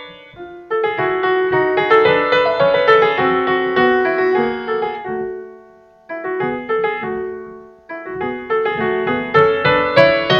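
Piano melody played on an electronic keyboard: flowing phrases of struck notes and chords. The playing dies away briefly just after the start, around the middle, and about two seconds before the end.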